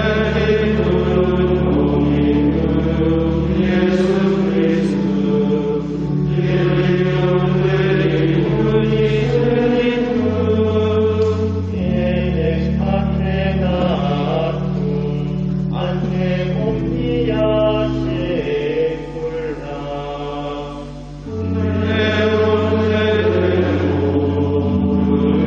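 Voices singing a slow sacred chant in a church, over sustained organ chords that change every few seconds. The sound softens briefly near the end, then swells again.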